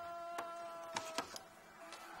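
A sustained chord of background music, which stops a little past a second in. Over it come a few short clicks of tableware at a dinner table.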